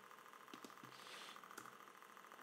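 Near silence: faint steady room hum with a few soft keyboard clicks as a number is typed in.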